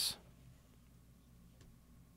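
Near silence: room tone after a spoken word ends, with one faint click a little past the middle.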